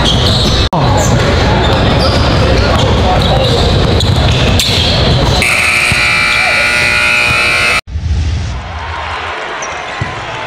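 Basketballs bouncing on a hardwood gym floor, with voices echoing around a large hall. The sound changes partway through and cuts off sharply near the end, where a quieter passage follows.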